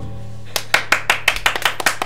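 The final acoustic guitar chord rings out, then a small group starts clapping by hand about half a second in: quick, uneven claps from a few people.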